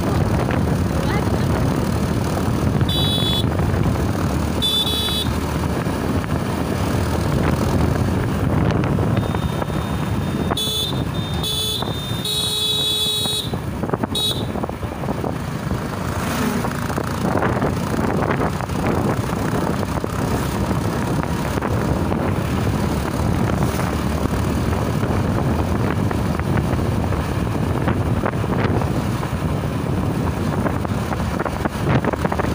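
Motorcycle running along a road with wind rushing over the microphone, and a vehicle horn honking: two short toots about three and five seconds in, then a quick series of toots and one longer honk from about ten to fourteen seconds in.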